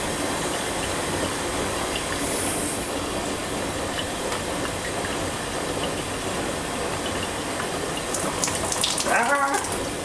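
Hotpoint Ultima WT960G washing machine on a wool wash, with a steady rush of water running into and around the drum. A few clicks and a short pitched sound come near the end.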